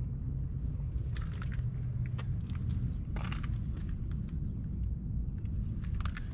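Steady low background rumble with a few faint ticks and taps about one, two and three seconds in.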